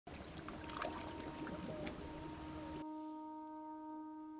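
Sea water lapping and trickling among shoreline rocks, with small splashes, cutting off suddenly about three seconds in. A soft, sustained musical chord is held throughout.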